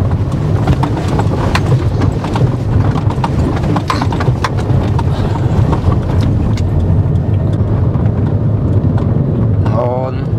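A car driving, heard from inside the cabin: a steady low road rumble with frequent knocks and rattles as it goes over a rough, pitted dirt road.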